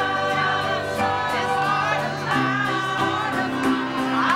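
Small mixed choir of men and women singing a gospel hymn in harmony, with piano accompaniment; the chord shifts a little past halfway.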